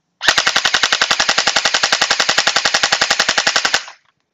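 Anstoy Glock-style electric gel blaster firing one continuous full-auto burst of about three and a half seconds: a rapid, even string of sharp shots, roughly a dozen a second, over the run of its motor and gearbox.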